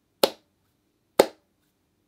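Two sharp clicks made with the hands, about a second apart, part of a slow, even beat of about one a second.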